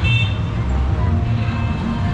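Street traffic with motor scooters and motorcycles running past close by, a steady low engine rumble, and a short horn toot right at the start.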